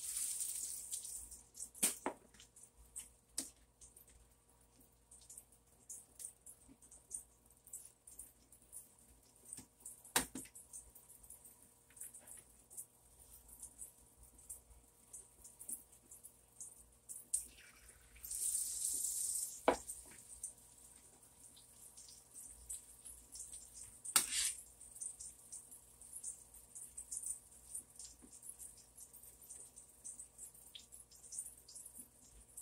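Egg-battered eggplant frying in a cast iron skillet: a crackly sizzle that starts suddenly as the piece goes into the pan and swells briefly a little after halfway. A few sharp knocks of utensils against the pan come through it.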